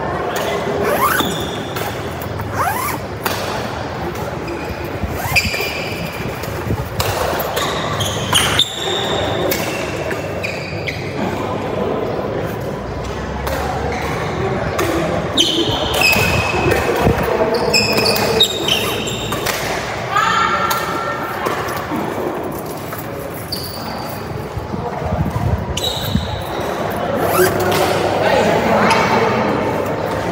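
Badminton doubles rally: sharp, irregular racket-on-shuttlecock hits and short squeaks of court shoes on the court mat, echoing in a large hall, over a background of voices.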